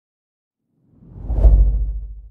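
A deep whoosh sound effect with a heavy low rumble, part of an animated logo intro. It swells in about halfway through, peaks, and is fading away by the end.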